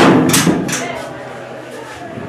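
Three knocks on a door about a third of a second apart, the first the loudest, each ringing out briefly.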